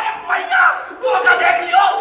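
Several young men shouting and yelling in loud bursts, one of them yelling with his mouth wide open.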